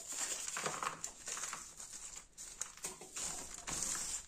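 Potting soil poured and spread by hand over a plastic seedling cell tray: an irregular rustling of soil with many small scrapes of hands on the plastic.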